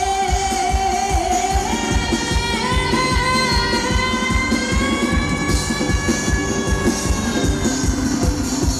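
Live pop band music: a fast, steady drum-kit beat under a long held melody note that steps up early on and then slowly rises.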